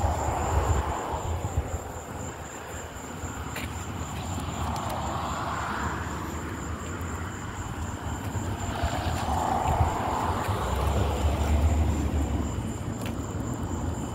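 Distant vehicle noise that swells and fades several times, with a low rumble late on, over a steady high-pitched insect trill.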